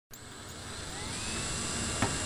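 A rushing whoosh sound effect, jet-like, that swells steadily in loudness, with a faint whistle gliding upward through it.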